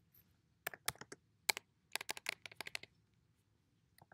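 Computer keyboard being typed on: a quick, irregular run of key clicks starting about a second in and stopping about a second before the end.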